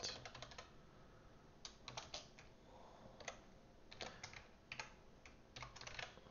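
Faint typing on a computer keyboard: keystrokes come in short bursts with pauses between them.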